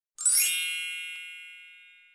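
A bright chime sound effect, struck once about a fifth of a second in, with a brief upward shimmer, then ringing with many high tones that fade away over nearly two seconds.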